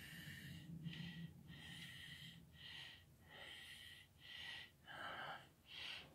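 Handheld 3-axis camera gimbal's motors whining faintly in short spurts, about one or two a second, as it is turned and corrects its position.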